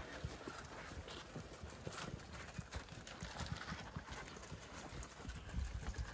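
Zwartbles sheep feeding at a trough: many quick, irregular crunching and chewing clicks, with heavier low thumps near the end.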